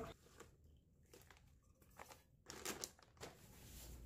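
Faint crinkling of a plastic bag being handled, in a few short bursts amid near silence, the loudest a little before three seconds in.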